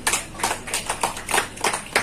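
Scattered hand clapping: separate sharp claps, about four a second and unevenly spaced.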